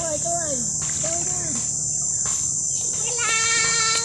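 Steady high-pitched drone of insects, with a few short rising-and-falling voice-like calls in the first second and a half and one longer held call near the end.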